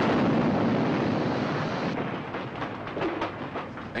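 A dynamite explosion blowing apart a wooden railroad car: the blast's rumble is loud at first and dies away over about two seconds. Scattered clatters of falling wooden debris follow.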